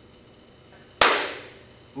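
A single sharp, loud bang about a second in, dying away over about half a second with a short echo.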